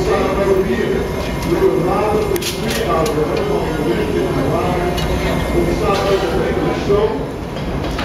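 Steady low roar of a gas-fired glory hole as a small glass piece on a blowpipe is reheated in it, with indistinct voices of people talking alongside. A few light clinks come about two and a half seconds in.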